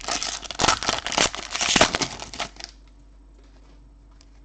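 A trading card pack wrapper being torn open and crinkled by hand: a dense crackling rustle for about two and a half seconds that then stops.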